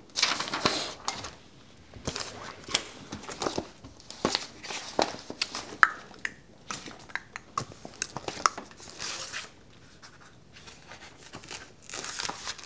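Sheets of paper handled over a woodblock: irregular rustling and crinkling with many small clicks.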